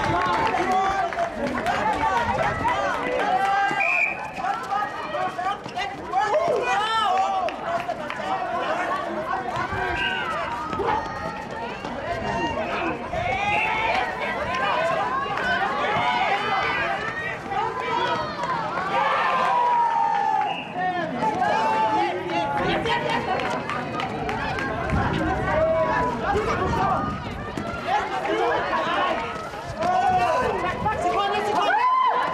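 Many voices of players and courtside spectators calling and shouting over one another, steady throughout, with running footsteps on the hard court.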